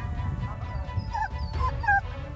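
A dog whining and yipping: several short high cries that bend up and down in pitch, the loudest near the end, over background music.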